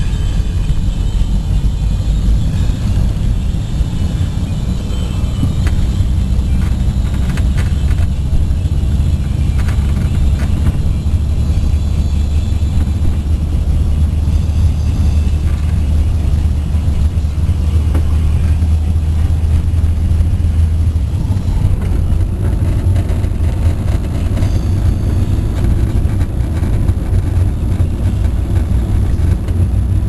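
Car interior road noise while driving: a steady low rumble of engine and tyres heard from inside the cabin. Its tone changes about twenty seconds in.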